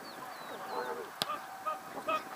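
A football kicked hard once, a sharp thud a little past halfway, among short pitched calls. Faint high chirps come near the start.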